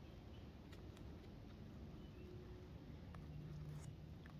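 Faint crackling and tearing of matted roots and soil as gloved fingers tease apart a root-bound blackberry root ball, a few soft ticks over a quiet background.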